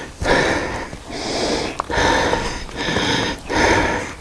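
A man breathing hard and fast, winded from exertion, in a rapid run of breaths about one every second.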